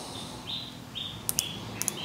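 Micrometer thimble being turned to close its spindle on a small threaded steel nipple, giving faint short high-pitched rubbing tones and a few light paired clicks from about the middle onward.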